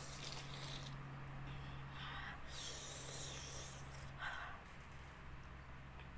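A person breathing hard through the open mouth, a few hissing breaths with the longest about a second long near the middle, reacting to the burn of extremely spicy chips; a low steady hum underneath.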